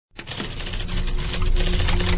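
Fast clatter of typewriter-style key clicks over a music intro with a deep bass pulse and a held low tone, starting abruptly and growing louder.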